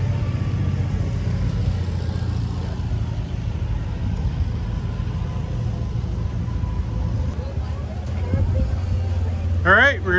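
An engine idling steadily, a low even rumble that runs throughout. A man starts speaking just before the end.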